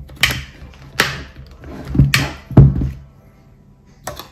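Sharp knocks and clicks of hard plastic trim on a carbon-fibre motorcycle helmet shell as the side vent pieces are handled and pressed into place: four hard knocks in the first three seconds, each with a dull thud.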